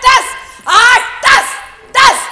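Barking: three short, loud, high yelps about half a second apart, each rising and falling in pitch.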